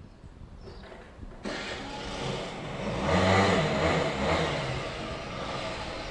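Motor scooter engine coming on suddenly about a second and a half in, revving up and dropping back, then running steadily as the scooter pulls away.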